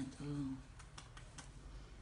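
A few light, irregular clicks and taps, starting just after a woman softly says one word.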